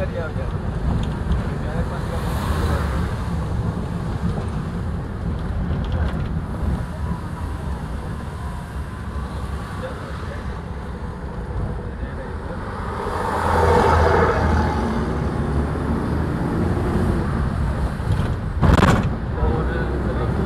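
Steady low road rumble heard from inside a moving vehicle's cabin, swelling louder for a couple of seconds about two-thirds of the way through, with a sharp knock near the end.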